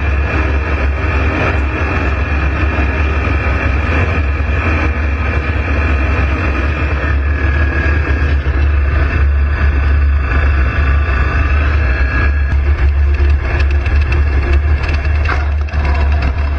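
Ultralight aircraft's engine and propeller running steadily in flight, a loud constant drone heard from inside the cockpit.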